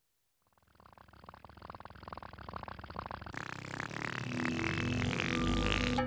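Sound effect of the Teletubbies voice trumpet rising out of the ground: a rapid buzzing rattle that starts about half a second in and grows steadily louder, with a few held tones joining near the end.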